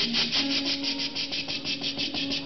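Beatboxing into a handheld microphone: a fast, even run of breathy hissing strokes, about ten a second, over a low held note.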